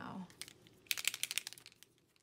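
Paper rustling and crinkling as it is handled, a quick run of dry crackles starting about a second in and fading out near the end.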